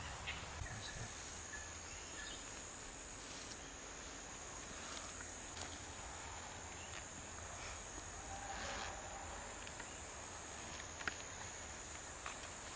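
Steady high-pitched insect chorus droning without pause, with a few faint clicks.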